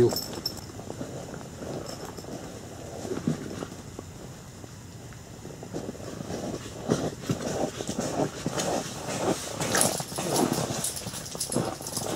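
Light, irregular knocks and rustling as a small perch is pulled up through the ice hole and handled, starting about halfway through after a quieter stretch.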